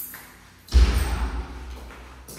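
A sudden gust of wind, starting less than a second in: a loud low rumble that dies away over about a second, as the draught through the open house sets the doors banging.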